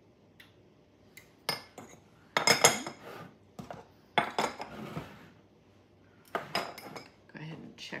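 A small spoon and dishes clattering on a kitchen counter: the spoon clinking against small bowls and containers being handled and set down, in four or five short bursts, the loudest about two and a half seconds in.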